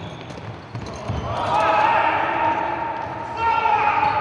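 Indoor futsal game: the ball being kicked and thudding on the wooden hall floor, with players shouting from about a second in.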